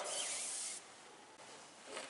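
A pen dragged along aircraft covering fabric while marking a line: a scratchy hiss for under a second, then faint room noise.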